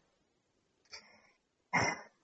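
A pause in a phone call, mostly quiet. There is a faint click about a second in, then a brief breathy laugh from a caller near the end.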